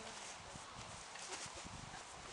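Faint background noise with a few soft, irregular knocks.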